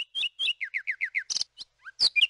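Bird song: a quick run of repeated two-note chirps, about five a second, that turns about half a second in to a run of falling slurred notes, followed by a few sharp high calls near the end.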